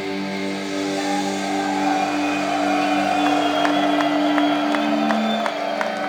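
A live heavy metal band's closing chord, with sustained guitar notes held and fading out near the end. Through the second half the crowd starts cheering and clapping.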